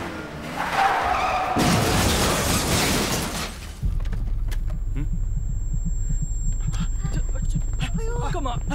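A van's brakes squeal about a second in, then a crash of metal and breaking glass follows as it runs into a car, lasting about two seconds. After that the engine idles with a low steady rumble, under a thin high-pitched whine.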